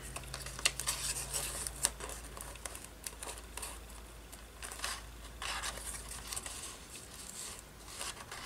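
Paper cutout pieces being slid, shuffled and pressed by hand on a journal page: soft intermittent rustling and brushing with a few small taps.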